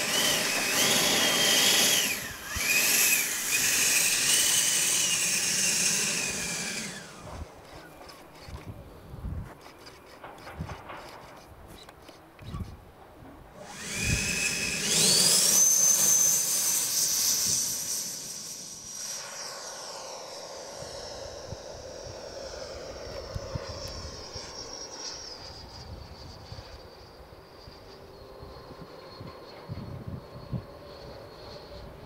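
Schubeler 120 mm electric ducted fan in a Sebart Avanti XS model jet: a loud high whine that steps up and down in pitch for about seven seconds as it is run up on the ground, then winds down. About fourteen seconds in it spools up again with a steeply rising whine to full power for the take-off, then slowly fades as the jet flies away.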